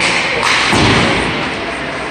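Dull thuds echoing in an ice hockey rink, the deepest about a second in, over the hiss of skates and play on the ice.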